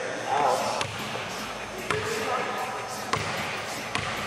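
Basketball bouncing on a gym court floor: about four separate bounces, roughly a second apart.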